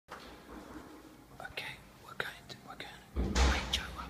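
A man whispering close to the microphone in short breathy bursts, with a louder rush of breath near the end.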